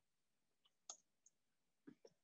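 Near silence broken by a few faint, short clicks.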